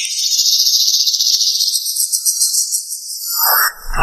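A high, rapidly pulsing buzz that starts abruptly, runs for about three seconds and fades out, with no low notes under it.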